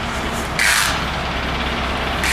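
Steady low rumble of city street traffic, with a short hiss about half a second in.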